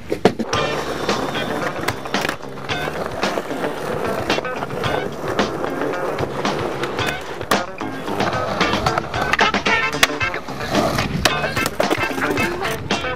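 Skateboard wheels rolling on concrete, with sharp wooden clacks of the board popping, landing and slamming every second or two, over background music.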